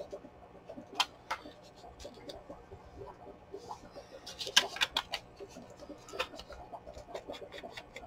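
Paper being handled on a tabletop: a torn scrap of old book page set down and pressed flat onto a paper library pocket, heard as scattered soft rustles and light taps, with a brief burst of rustling a little past halfway.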